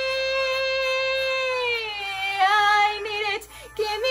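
A young woman singing solo. She holds one long high note with a light vibrato, slides down from it just before halfway through, then sings a few shorter notes with a wider vibrato.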